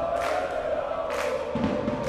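Football crowd singing a chant in the stands, holding one long sung note over general crowd noise, with two short sharp knocks on top.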